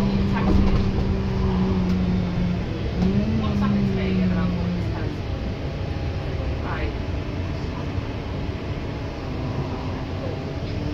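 Interior running noise of an Alexander Dennis MMC bus on the move: engine and road rumble, with a steady drone that rises briefly about three seconds in and drops away near five seconds in. Passengers' voices are faint in the background.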